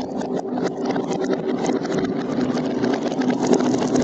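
Glass marbles rolling along a cardboard and plastic-tube marble run, giving a steady rolling rumble with many quick clicks as they knock against each other and the track.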